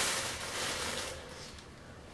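Used paper towels rustling as they are bundled into the trash, loudest at first and fading away over about a second and a half.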